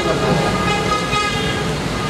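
A long, steady horn-like tone with several pitches sounding together.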